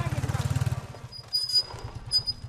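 Small motorcycle's engine running as it passes close by, its rapid even firing pulses dropping away after about a second as it rides off. A few sharp clicks and a short high squeak follow.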